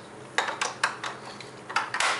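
Plastic magnetic alphabet letters clacking against one another and the fridge door as they are handled: a few sharp clicks about half a second in, and more near the end.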